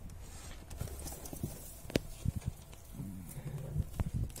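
Handling noise in a straw-lined wooden rabbit nest box: a few light, scattered clicks and knocks, mostly around the middle, as a newborn kit is set back among its littermates. A faint low murmur follows near the end.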